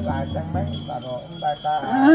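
Small ritual bells jingling in a steady rhythm, about four shakes a second, under voices chanting in the Dao ordination rite.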